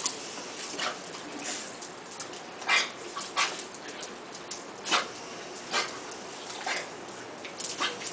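Pit bull giving short, sharp barks and yips, about one a second, while it snaps at the spray from a garden hose.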